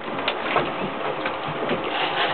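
Steady rush of wind and sea noise aboard an open fishing boat, with a few faint clicks.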